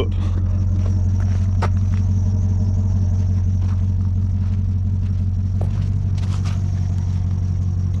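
A vehicle engine idling steadily, a low even hum, with a couple of faint scuffs on gravel.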